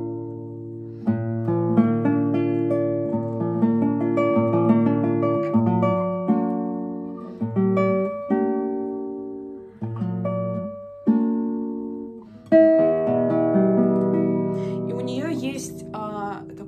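Roman Blagodatskikh's nylon-string classical guitar played fingerstyle: a slow melodic passage of plucked notes over bass notes, each note ringing and then fading, with a couple of short breaks in the phrase. The player finds this guitar short on sustain and wants more overtones from it.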